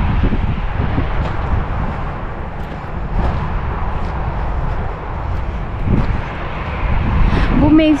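Wind buffeting the microphone over a steady rumble of motorway traffic.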